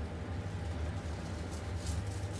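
A steady low hum, with a faint scrape or two of a spatula against the plate near the end.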